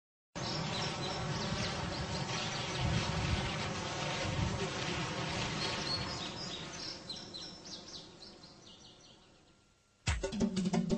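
Insects buzzing steadily in a grassy field, with short high chirps over it; the sound starts abruptly and fades out over the last four seconds.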